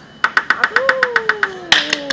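A few people clapping quickly and evenly, about eight claps a second, getting louder and rougher near the end. Partway through, a voice calls out in one long note that slides down in pitch.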